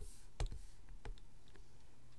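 Sharp clicks from a digital drawing setup: two louder ones close together at the start, then a few fainter, scattered ones.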